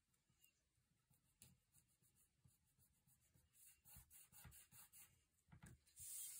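Faint rubbing and light scratching of fingertips pressing paper alphabet stickers down onto a planner page: a string of short, soft strokes that grows louder in the second half.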